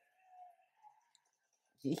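Near silence with a few faint soft sounds and small clicks, then a man starts to speak just before the end.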